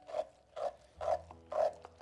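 Hand-cranked stainless-steel food mill (passe-purée) forcing cooked apples through its sieve, a rhythmic scraping squash with each turn of the blade, about two a second.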